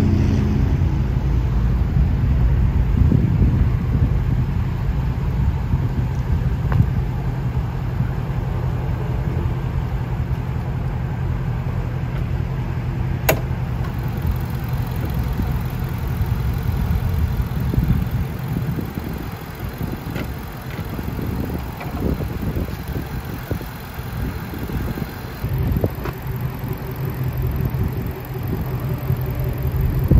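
Shelby GT350's 5.2-litre flat-plane-crank V8 idling steadily, a low, even rumble that turns quieter and patchier about two-thirds of the way through. A single sharp click comes about 13 seconds in.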